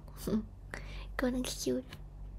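Close, partly whispered speech with a short cough about a second in.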